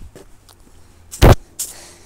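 Footsteps in soft slippers on a concrete path, a few faint scuffs, with one loud thump just over a second in, over a faint steady low hum.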